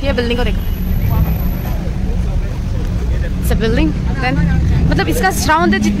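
Steady low rumble of city street traffic, with a voice speaking in snatches over it about halfway through and near the end.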